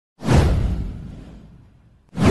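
A single whoosh sound effect with a deep low end. It starts suddenly and fades away over about a second and a half.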